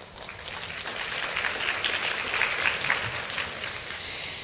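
Large audience applauding, the clapping swelling over the first second and then holding steady.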